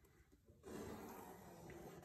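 Near silence: faint room tone, with a soft hiss coming in about half a second in.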